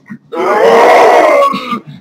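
A loud, drawn-out vocal yell lasting just over a second, its pitch rising and then falling.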